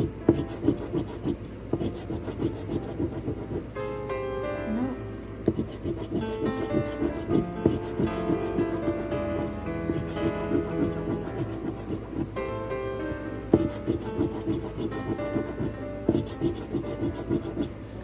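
A gold-coloured coin scraping the scratch-off coating from a paper lottery scratch ticket in rapid, repeated strokes, over background music.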